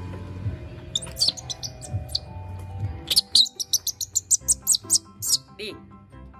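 Background music with a series of short, high-pitched chirps that start about a second in and come fast, about four a second, for a couple of seconds before stopping shortly before the end.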